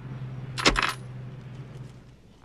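Mechanical clicks of a cassette deck being operated by hand: a quick cluster of sharp clicks a little over half a second in, over a steady low hum.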